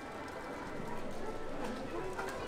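Faint, irregular crinkling of cellophane-wrapped stationery being handled, over the steady background noise of a shop.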